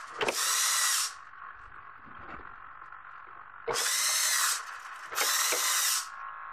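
Small hobby servo motors whining in three bursts of about a second each, one near the start and two near the end, as they turn the chain-driven sprockets that work the cocktail machine's dispensing valves. A faint steady hum carries on between the bursts.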